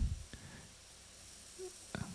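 Faint buzz of a small Dynamixel XC330-M288-T geared servo spinning under velocity control, its speed being ramped up. A soft low thump comes right at the start, and faint ticks follow.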